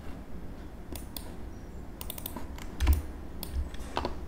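Computer keyboard keystrokes and mouse clicks, scattered in small clusters, with a low thump about three seconds in.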